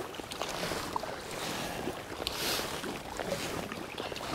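Kayak paddling on calm water: soft swishes of the paddle blade with light drips, one louder swish about halfway through.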